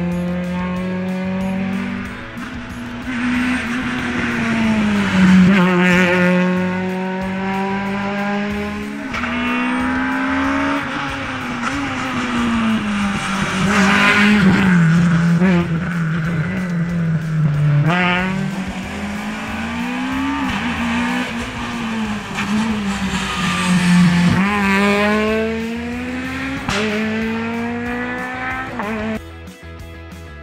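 Peugeot 208 rally car's engine worked hard on a stage, its pitch climbing and falling again and again as it changes gear and lifts for corners. The sound cuts away just before the end.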